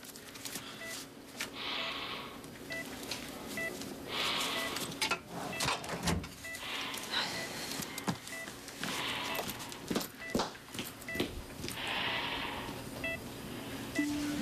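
Hospital ventilator breathing for a patient, a soft hiss rising and falling about every two and a half seconds, with a patient monitor giving short high beeps throughout and a few sharp clicks.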